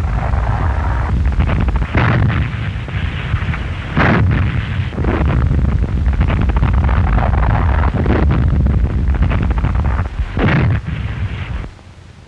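Gunfire and shell explosions: a continuous heavy rumble broken by sharp blasts about two, four and ten and a half seconds in, cutting off suddenly just before the end.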